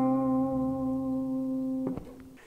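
Tapped harmonic on an electric bass guitar: a single C sounding an octave above the note fretted at the fifth fret of the G string. It rings steadily and fades slowly, then is cut off with a soft click near the end.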